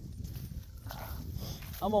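Wind buffeting the microphone as a steady low rumble, with a faint click about a second in. A man's voice starts near the end.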